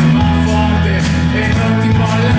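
Live rock music from a band with steady low bass notes, and a man singing into a handheld microphone.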